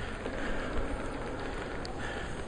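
Steady, even background noise with a low rumble: the ambience of a large church interior.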